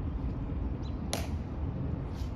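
A single sharp click about a second in, most likely a Tomb Guard's heel click, over a steady low outdoor rumble.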